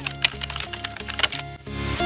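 Computer keyboard typing sound effect, a quick run of key clicks, over electronic background music that swells near the end.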